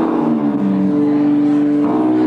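Live band music: amplified electric guitars holding long sustained notes, one of them sliding down in pitch about half a second in.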